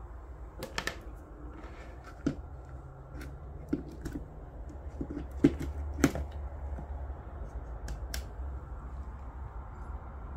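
Scattered plastic clicks and knocks, about seven in all and loudest around the middle, as a plug-in smart plug is handled and pushed into a wall power point, over a steady low hum.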